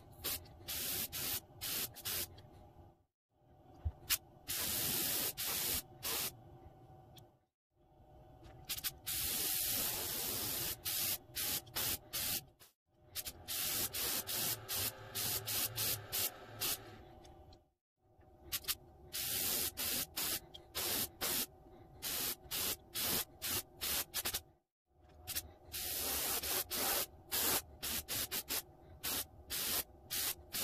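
Airbrush spraying paint onto a lure body: quick trigger pulses of hiss, several a second, between longer steady sprays. The sound cuts out completely a few times.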